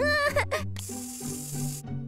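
A cartoon ticket-barrier machine taking in a paper ticket: a hiss lasting about a second that cuts off suddenly, over light background music.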